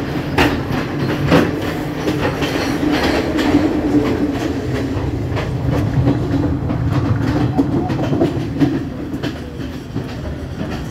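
Passenger train running on the line, heard from inside: a steady rumble of wheels on rail with irregular clacks and knocks. It grows a little quieter near the end.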